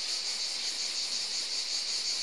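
Insects chirring steadily in a high, continuous band, with no break through the pause in talk.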